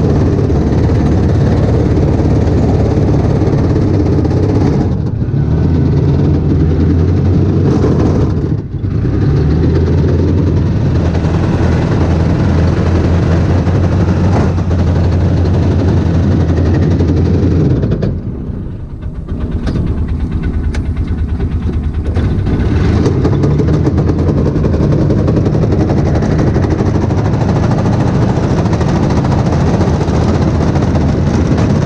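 A vehicle engine running steadily under load, heard from the driver's seat. The sound eases off briefly three times, about 5 s, 9 s and 19 s in.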